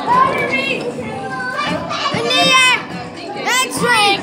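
Children's high-pitched voices shouting and calling out, with two long high calls, one about two and a half seconds in and one near the end.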